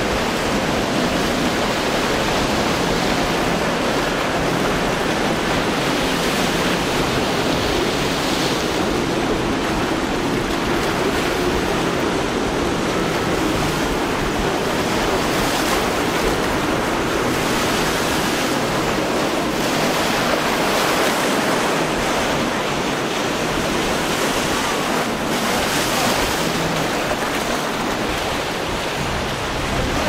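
Steady rush of breaking surf and rough sea, with wind on the microphone.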